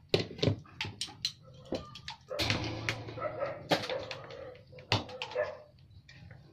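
An animal's whines and yips, among a series of sharp clicks and knocks.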